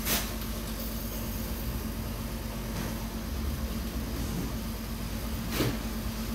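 Vibratory bowl feeder buzzing steadily as it shakes steel washers along its track onto a running conveyor belt, with a constant low hum. Two sharp clicks sound, one just after the start and one near the end.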